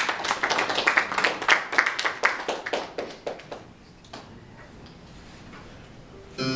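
A small audience clapping between movements, a quick patter of claps that thins out and stops about four seconds in.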